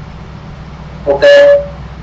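A man's voice saying a drawn-out "ok" about a second in, over a steady low background hum.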